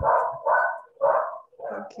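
A dog barking repeatedly, about two barks a second, heard over a video-call microphone.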